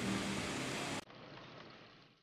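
Combat Boat 90 running on water: a steady engine hum with rushing wake noise. About a second in it cuts off abruptly to a much quieter, duller noise that fades away.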